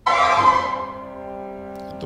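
Recorded orchestral music from an opera excerpt: a chord with strings starts suddenly and loudly, eases down after about half a second to a second, and is then held steadily.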